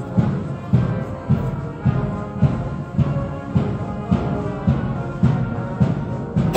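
Military marching band playing a march as it passes in the street: a bass drum on every beat, a little under two beats a second, under held brass chords.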